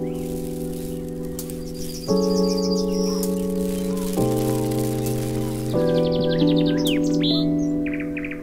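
Station-break jingle: slow, sustained chords that change about every two seconds, with bird chirps twittering over them twice.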